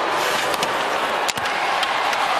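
Steady hockey-arena crowd noise, with a few sharp clicks of stick, puck and skates on the ice as a shooter closes in on the goaltender and shoots. The sharpest click comes a little past halfway.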